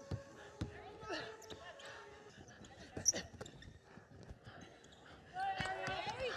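A basketball dribbled on a court: a few separate bounces, two close together at the start and a louder one about halfway through. Faint player voices underneath, with a voice coming up near the end.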